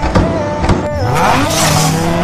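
A car engine revving up, its pitch rising, with a rush of noise in the second half, over background music.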